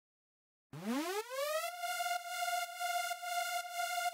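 A Serum synth lead note sounding a siren-like pitch bend. It swoops up from low into pitch over about a second, then holds a steady buzzy tone until it cuts off. The swoop comes from an envelope on the oscillators' coarse pitch, which controls how long the pitch takes to come back up.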